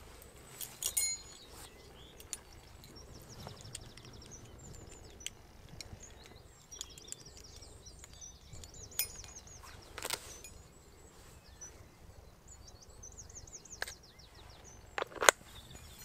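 Wild birds singing repeated high trills over a field, with a few short sharp clicks. A single loud sharp crack comes near the end.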